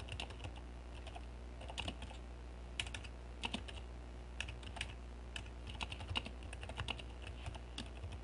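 Typing on a computer keyboard: faint, irregular keystrokes as a sentence is typed out.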